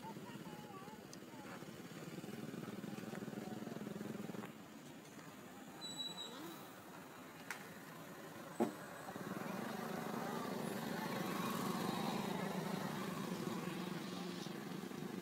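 A steady motor engine hum that drops away for about four seconds in the middle and then returns, with two sharp clicks during the lull.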